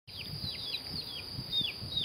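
A small bird calling a quick, uneven series of short 'piak' notes, each sliding downward in pitch, over a steady high-pitched hum.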